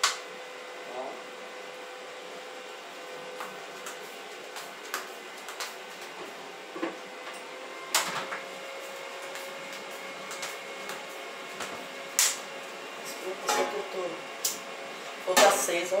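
Kitchen handling noises: scattered clicks and knocks of pots and utensils over a faint steady hum.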